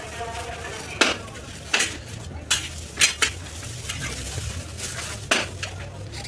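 Biryani being served from a large pot into styrofoam takeaway boxes: a handful of sharp knocks and clatters of utensils and containers, over a steady hiss.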